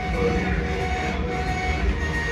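Solna 225 offset printing press running: a steady mechanical rumble with faint steady whining tones.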